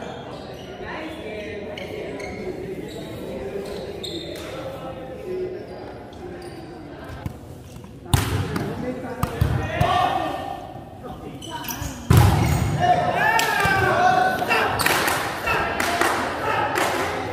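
Volleyball hits and ball thuds echoing in a large gym, with two loud impacts about halfway and three-quarters of the way through, amid players' voices and calls.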